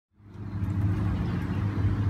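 A steady low mechanical hum, made of several even low tones, fading in about a quarter of a second in.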